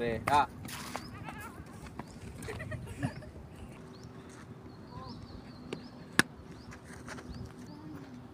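A short, loud, wavering cry right at the start, then a breathy burst of noise just under a second in. After that comes a low outdoor background with a few faint knocks and one sharp crack about six seconds in.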